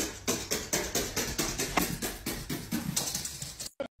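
Quick footfalls on wooden stairs, a run of knocks about four or five a second, as a small dog and a barefoot person go down the steps. The sound cuts off abruptly shortly before the end.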